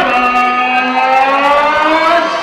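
Ring announcer's voice through a microphone, holding one long drawn-out vowel as he calls out a fighter's name.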